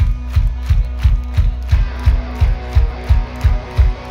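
Live rock band playing an instrumental passage: electric guitar over a held bass note, with a steady kick drum about three beats a second.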